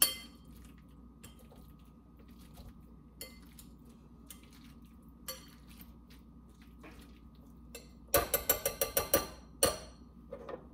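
Hand potato masher mashing chickpeas in a glass mixing bowl, clinking against the glass. One loud clink at the start, a few faint taps, then a quick run of about ten clinks about eight seconds in.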